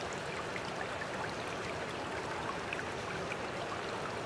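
Steady running and splashing water in a pond, with faint scattered droplet ticks.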